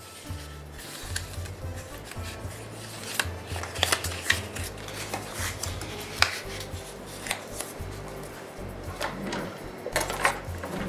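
Handling sounds from crafting: paper and tape rubbing on a plastic LED candle, with scattered light clicks and taps as the candles are handled and set down on a tile countertop. Faint background music with a low bass line plays underneath.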